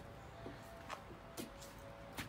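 Faint footsteps on a wooden deck: a few soft knocks about half a second apart, over a faint steady hum.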